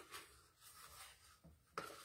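Faint rubbing and handling noise as a watercolor paint set is brought in by hand and set down on the work surface, with a slightly louder knock near the end.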